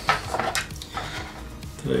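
Small hard items being handled inside an open hard-shell gimbal case as its charging cables are taken out: a couple of sharp clicks in the first second, then light scattered rattling.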